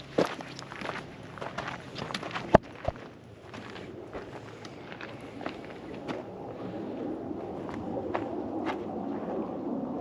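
Footsteps on a dirt and gravel trail, irregular crunching steps with one sharp click about two and a half seconds in. The steps thin out after about three seconds, leaving a few scattered clicks over a low steady noise that slowly grows toward the end.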